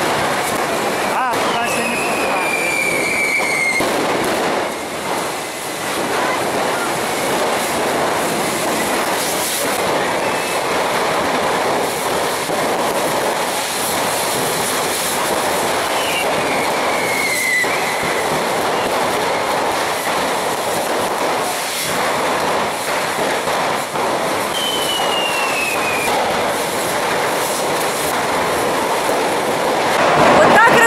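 Continuous dense hissing and crackling of many festival rockets fired along a narrow street, with three descending whistles standing out from it.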